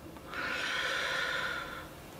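A man's single long breath through the nose, lasting about a second and a half.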